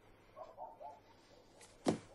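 Quiet room, then a single sharp smack or knock near the end.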